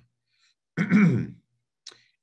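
A man clearing his throat once, a short rasping voiced sound about a second in.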